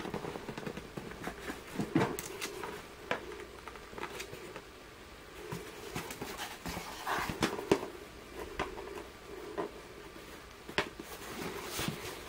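Faint, scattered clicks and creaks of a tritium exit sign's housing being handled and pried at by hand while trying to force the cover open, with a sharper click near the end.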